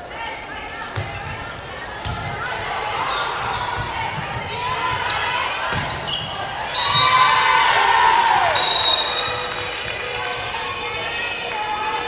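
Indoor volleyball rally on a gym court: the ball struck with sharp hits, under players' and spectators' voices that swell into loud shouting from about seven to nine seconds in as the point is played out.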